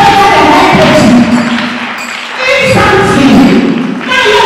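A woman singing loudly into a microphone over music. Her voice holds and falls in long wavering notes and breaks off briefly about two seconds in.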